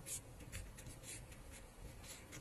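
Faint, soft scratching and rubbing of yarn drawn over a metal crochet hook as a double crochet stitch is worked, in a series of brief strokes.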